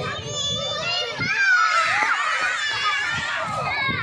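A group of young children's high voices overlapping at once, loudest around the middle.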